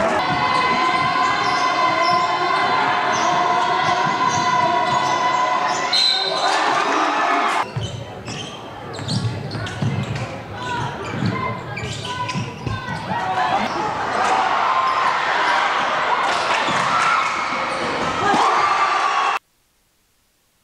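Basketball game sound in a gym: a ball dribbling on the hardwood floor amid crowd voices. The sound changes at a cut about eight seconds in and stops abruptly shortly before the end.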